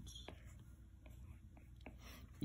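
Near silence with a low room hum and two or three faint ticks: a stylus tip tapping a tablet's glass screen while drawing.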